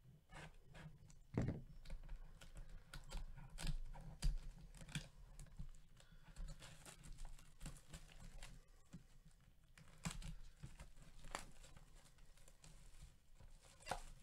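Clear plastic shrink wrap being torn and peeled off a trading-card hobby box, with faint, irregular crinkling and crackling.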